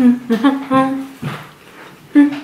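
A woman's closed-mouth laugh and hum with her mouth full of food: a few voiced notes over about the first second, then quieter.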